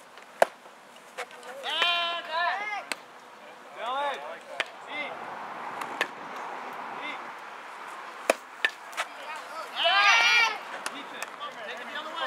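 Sharp knocks of a baseball in play, the loudest just after the start, with more about six and eight seconds in, amid high-pitched shouts from young players and spectators.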